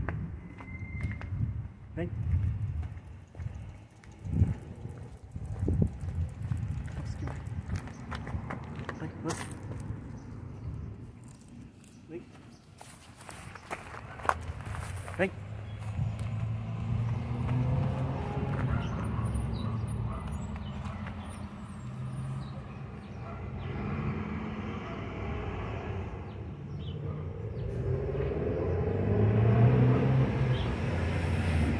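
Faint, indistinct voices, with scattered sharp clicks and knocks in the first half.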